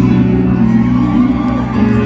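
Live band music through a concert PA in a large arena, with sustained held notes.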